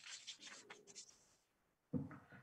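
Faint, irregular scratching and rubbing strokes close to an open microphone for about the first second, then stopping, with a short soft sound right at the end.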